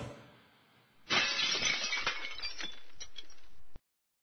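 Breaking-glass sound effect: a sudden crash about a second in, followed by a couple of seconds of tinkling clinks that die down, then it cuts off abruptly.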